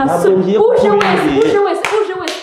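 A few sharp hand claps over a loud, raised voice talking.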